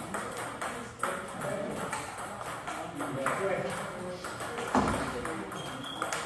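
Table tennis rally: the ball clicking back and forth off the paddles and the table, with one louder knock about five seconds in. People talk in the background.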